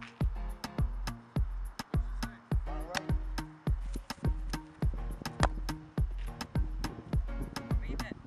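Background music with a steady drum beat, the kick drum landing about twice a second under held synth-like notes.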